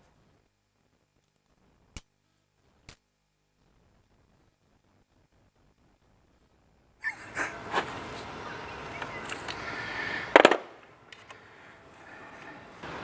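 Near silence broken by two short clicks, then about seven seconds in a steel tool-chest drawer of adjustable spanners clattering and clinking as the tools are rummaged through, with one loud metallic clank about ten seconds in.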